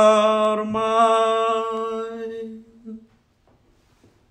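A man singing a hymn unaccompanied, holding long notes through its closing phrase, which ends about two and a half seconds in.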